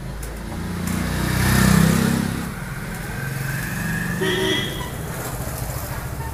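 A motor vehicle passing close by, its engine noise swelling to a peak about two seconds in and then fading, with a brief higher-pitched tone a little after four seconds.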